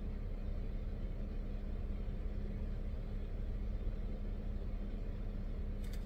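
Steady low hum of a car idling, heard from inside the cabin, with one constant low tone running through it.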